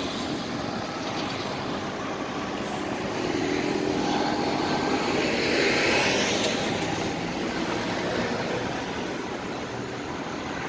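Busy city road traffic passing at a roundabout, a continuous rushing of engines and tyres. One vehicle passes close, growing louder to a peak about six seconds in and then fading.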